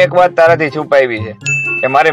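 A man speaking, with a single high ding about three quarters of the way in that rings on as one steady tone for about a second.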